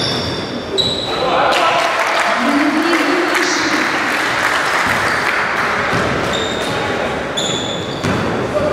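Basketball game on a gym court: sneakers give short high squeaks on the court floor about a second in and twice near the end, over the thuds of a ball bouncing. Players' voices call out underneath.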